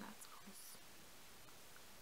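A woman says a soft word or two, then near silence with only steady room hiss.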